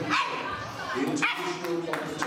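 A bull terrier barking and yipping several times over the chatter of people in a large hall.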